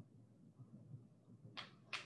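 Near silence: room tone, with a couple of faint short clicks near the end.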